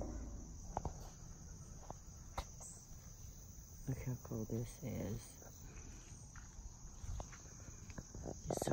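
A steady, high-pitched insect chorus from the woods, with a few faint footsteps on a dirt trail. Brief voices come in about halfway through.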